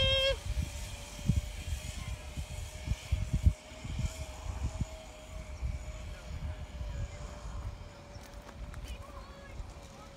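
Wind buffeting and handling bumps on a phone microphone, uneven and loudest about three and a half seconds in, with a faint steady hum underneath. A person's long held call cuts off just after the start.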